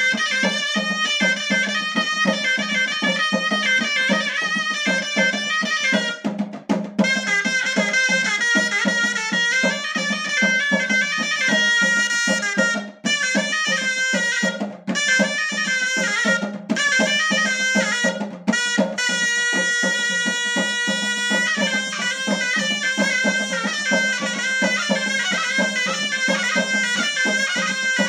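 Moroccan ghaita (double-reed shawm) playing a fast, ornamented chaabi melody over a steady percussion beat. It breaks off briefly a few times and holds one long note about two-thirds of the way through.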